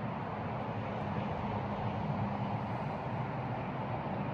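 Steady outdoor background noise: an even low rush with a faint hum about the middle. There is no distinct event.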